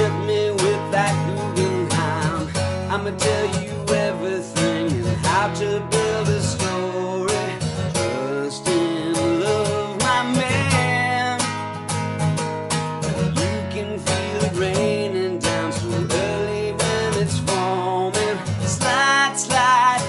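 Acoustic guitar strummed in chords, with a man singing over it.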